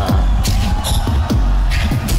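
Beatboxer's battle round: deep kick-drum hits with falling bass sweeps and sharp snare sounds in a steady beat, played back with short laughter over it at the start.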